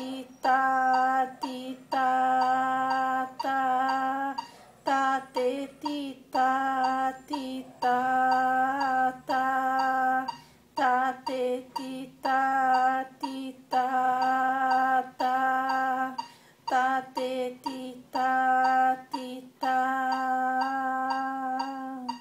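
A woman chanting rhythm syllables on one held pitch, sounding out the long and short note values of a hymn tune in a steady beat, with short breaks between phrases.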